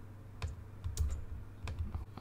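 About five separate clicks and key presses on a computer keyboard and mouse as text is selected and deleted.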